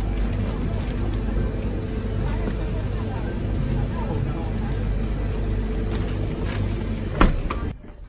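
Grocery store ambience: the steady hum of refrigerated display cases with faint voices in the background. A single sharp knock comes near the end, and then the sound cuts off suddenly.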